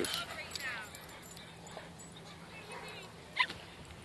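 A dog whines briefly and faintly near the start, then low outdoor background with a single short knock a little before the end.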